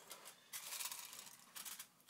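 Aluminium foil crinkling as it is pressed and crimped down around the rim of a ramekin to form a lid. The rustling runs from about half a second in to just before the end.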